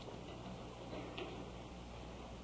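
Faint room tone in a pause of a sermon recording: low hiss with a steady low hum and a single faint click a little after a second in.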